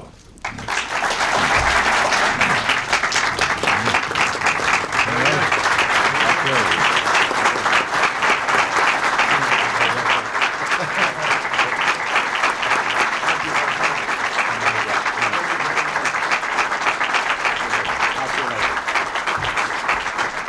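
Audience applauding steadily, the clapping starting about half a second in, with voices mixed in among it.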